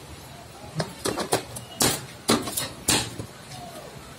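A run of about eight sharp knocks and clinks of hard objects over two seconds, the loudest about two seconds in.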